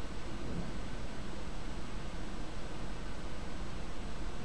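Room tone: a steady hiss with a low hum underneath, and no distinct events.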